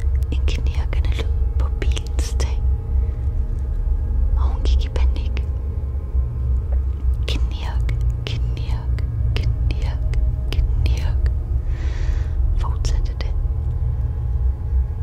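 Dark horror sound design: a steady low drone under scattered scratching clicks and breathy, whisper-like noises, with a short hiss about twelve seconds in.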